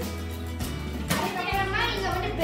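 Background music with a steady bass line, and a child's voice over it in the second half.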